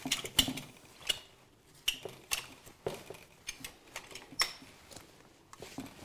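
Irregular light clicks and clinks of hardware as rope is handled and seated at the rope grab of an ActSafe ACC power ascender; the winch motor is not running.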